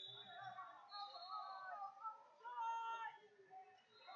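Indistinct voices and shouts of people around the wrestling mats, echoing in a large hall, with a few thin high-pitched tones among them.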